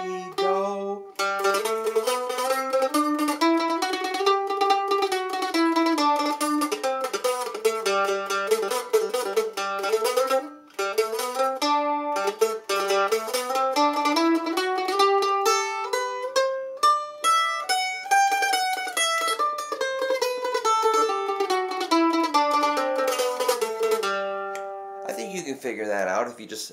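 Rogue mandolin playing a scale by ear: picked notes climb and then descend, twice over, with each note picked repeatedly.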